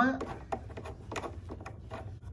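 A few light clicks and scrapes as a threaded rubber foot is screwed by hand into a subwoofer's metal base plate.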